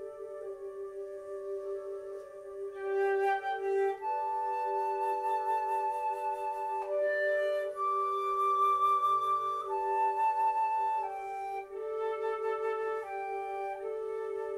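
Flute playing long held notes that change pitch every second or two, entering about three seconds in. Beneath them runs a steady sustained tone from the loudspeakers, the electronic part of an electroacoustic piece.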